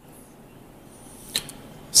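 Faint steady background hiss of a live remote reporter's microphone feed, with one short sharp click about one and a half seconds in.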